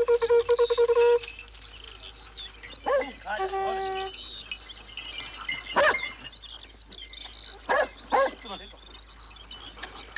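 A pack of hunting dogs whining, yelping and giving short barks as they crowd around their handler, a few sharp calls standing out near the middle and later on. A steady, rapidly pulsing tone ends about a second in.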